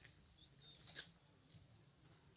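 Near silence with faint, scattered high chirps of small birds, the clearest one about a second in.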